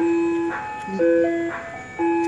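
Ice cream truck's electronic chime music playing a simple tune, clear single notes held about half a second each and stepping up and down in pitch.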